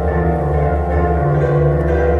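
Solo bandura being played: plucked strings ringing, with low bass notes that change about every half second under higher melody notes.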